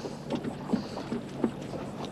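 Low, steady background noise on a fishing boat, with a few light, short knocks as a small redfish is handled over the deck.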